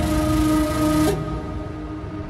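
Electronic background music: a held synth chord whose high end cuts out about a second in, leaving a thinner, quieter sound.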